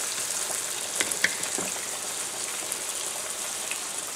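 Diced onion, celery and bell pepper sautéing in butter and sausage drippings in a hot pan: a steady sizzle, with a few light clicks about a second in.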